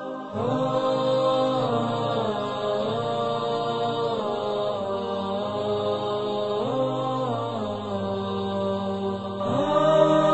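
Vocal chanting in long held notes over a low sustained drone, in the style of an Islamic nasheed, with the melody sliding to a new note every second or two.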